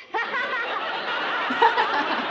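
A man and a woman laughing hard together, starting just after a brief lull and running on steadily.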